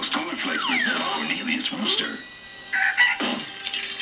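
Television commercial soundtrack: a voice and cartoonish gliding vocal sounds over music, with a held steady tone a little past the middle.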